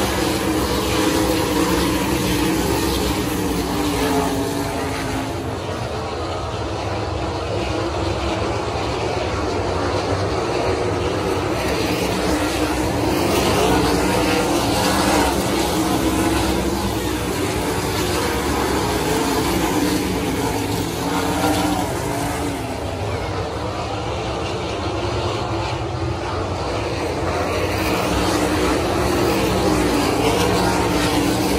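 A field of 410 sprint cars racing on a dirt oval, their 410-cubic-inch V8 engines running loud and unbroken. The pitch wavers and the sound swells and fades as the pack comes round, dipping about six seconds in and again about two-thirds of the way through.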